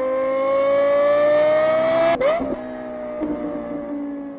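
A car engine revving up as an outro sound effect: the engine note climbs steadily for about two seconds, breaks with a quick jump in pitch like a gear change, then holds a steady, slightly lower note.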